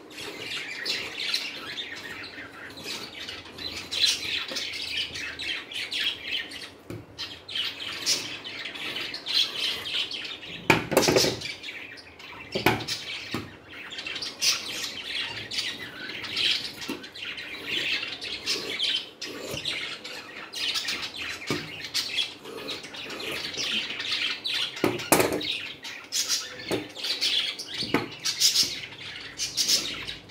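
Large tailoring shears snipping and crunching through cotton blouse fabric on a wooden table, with a few sharper clacks. Birds chirp steadily in the background.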